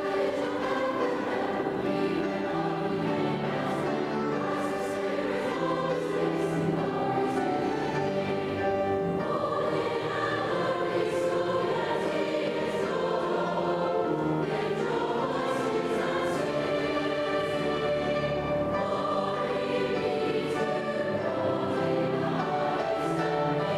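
A large school choir singing a sustained choral piece, accompanied by a school wind band, in a large stone church.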